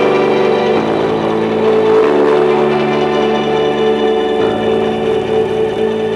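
Electric bass guitar playing long held notes in a slow, ambient passage, moving to a new note about three times.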